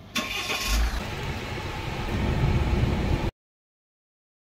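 A 2021 Tata Safari's 2.0-litre four-cylinder diesel engine being started by push button: a brief whirr of the starter, a thump as the engine catches about half a second in, then the engine running and growing louder. The sound cuts off abruptly near the end.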